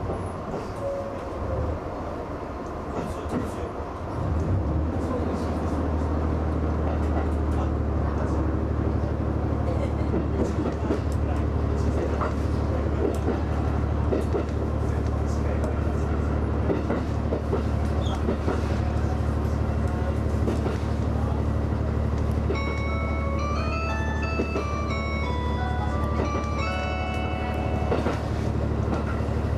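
HB-E300 hybrid railcar running, a steady low drone from under the car that grows louder about four seconds in as the train gets under way, with scattered clicks over it. About 22 seconds in, an electronic chime melody plays over the drone, the signal that an onboard announcement is coming.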